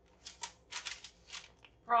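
Paper rustling in several short, irregular bursts as the pages and envelopes of a stapled junk journal are lifted and turned over by hand.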